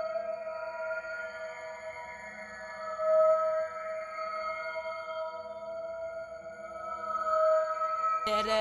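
Background film-score music: a steady synth drone holding the same chord, swelling briefly about three seconds in.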